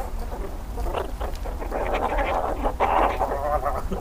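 Meerkats calling close to the microphone while they squabble over food, a rough, nasal chatter that grows busier in the second half.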